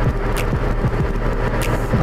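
Motorcycle engine running steadily at cruising speed, with wind and road noise on the rider's microphone. Two short hisses come about half a second in and near the end.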